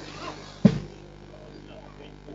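A single sharp thump a little over half a second in, much louder than anything else, over faint crowd voices and a low steady background hum.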